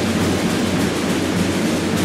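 Procession drum played in a continuous roll, a dense wash of sound with no separate strokes standing out, ringing in the church.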